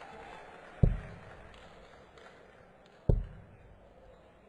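Two steel-tip darts striking a Unicorn Eclipse Pro bristle dartboard, each landing as a sharp thud about two and a quarter seconds apart, picked up close by the board microphone.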